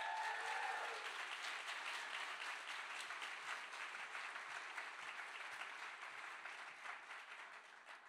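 Audience applauding, steady at first and tapering off near the end.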